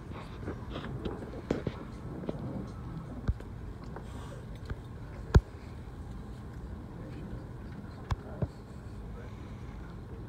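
Indistinct background chatter in a large room over a steady low hum, with several sharp clicks or knocks, the loudest about five seconds in.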